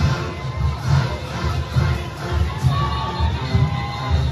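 Junkanoo rhythm section's drums beating a fast, steady pulse, mixed with a crowd cheering and shouting. A few short high tones sound over it in the second half.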